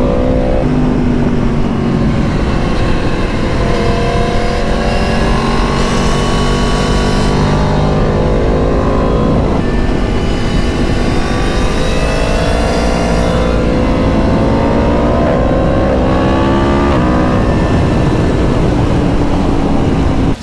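Yamaha MT-10's crossplane inline-four engine pulling hard through the gears, its pitch climbing and dropping back at several upshifts, with steady wind rush at speed.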